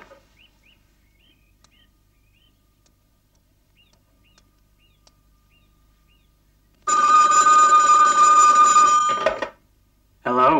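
A telephone ringing: one long, steady ring lasting about two and a half seconds, starting about seven seconds in.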